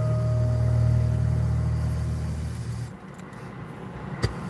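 Ambient worship music: a steady low drone with a bell-like ringing tone slowly fading over it. The drone drops away about three seconds in.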